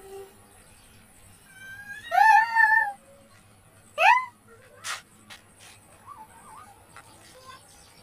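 Two loud, high-pitched cries: the first wavers for about a second, and the second is a quick upward squeal. A faint sharp click follows soon after.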